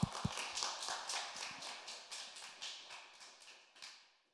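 Audience applauding with scattered claps that thin out and die away near the end.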